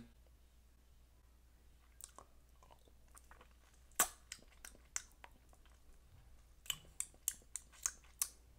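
Faint mouth sounds of a man sucking a hard-candy lollipop: scattered wet clicks and smacks of lips and tongue on the candy, with a sharp one about four seconds in and a quick run of them near the end.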